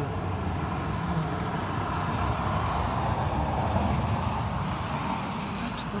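A road vehicle passing on a wet street, its tyre and engine noise swelling gradually to a peak in the middle and easing off.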